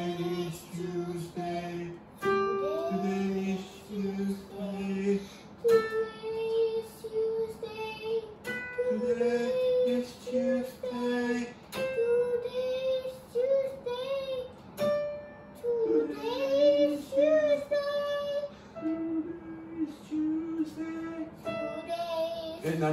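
Young girl singing vocal warm-up exercises, short stepped note patterns, with an electronic keyboard playing the notes along with her. Each pattern is repeated at a higher pitch through most of the stretch, then drops lower near the end.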